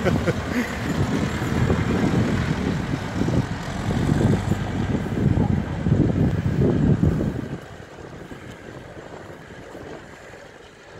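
Farm tractor engine running as it pulls a loaded trailer away, its low rumble dropping off suddenly about seven and a half seconds in. A short laugh comes at the start.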